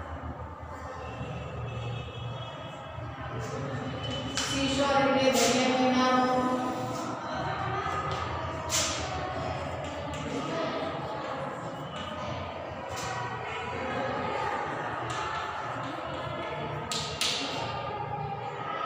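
Chalk tapping and scratching on a blackboard as words are written, in short sharp strokes. A voice speaks, loudest a few seconds in.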